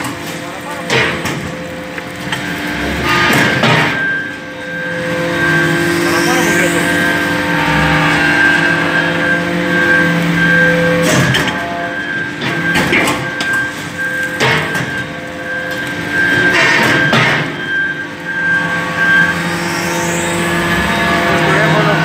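Hydraulic briquetting press compacting metal turnings: a steady hum with several pitched tones from the hydraulic power unit, broken by a series of sharp clanks from the ram and mechanism. Twice there is a short rising squeal.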